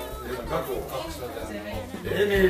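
Indistinct chatter: several voices talking at once.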